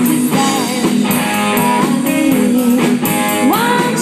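Live rock band playing, the electric guitar to the fore over bass and drums, with a note sliding upward near the end.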